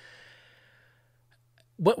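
A man's short breath out into a close microphone, a faint sigh that fades within about half a second, followed by near silence before he speaks again.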